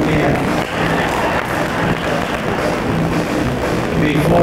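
Live country band music played through the stage sound system, with guitar and bass notes held steadily beneath a noisy background.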